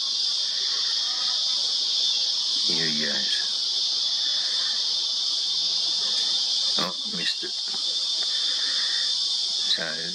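A steady, high-pitched insect chorus droning without a break, with short snatches of voices a couple of times.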